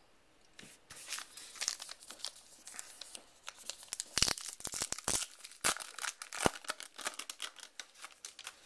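The paper wrapper of a Topps Heritage baseball card pack being torn open and crinkled as the cards are pulled out: a run of irregular crackles and sharp rips, loudest in the middle.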